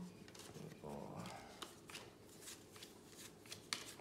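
Sports trading cards handled and thumbed through by hand: a run of soft, quick flicks and slides of card stock against card and the table. A short murmured voice comes about a second in.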